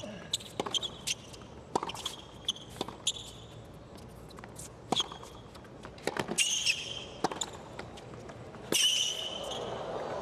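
Tennis rally on a hard court: sharp racket strikes on the ball and ball bounces every second or so, with shoe squeaks on the court surface. Crowd noise rises near the end as the point finishes.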